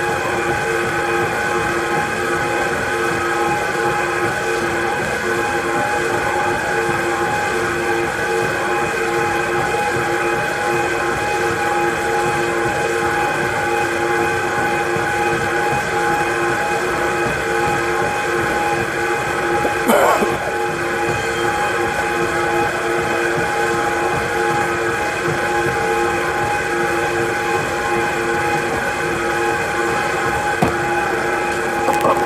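A steady mechanical running sound with several held tones over a noisy hum, unchanging throughout, with one brief knock about two-thirds of the way through.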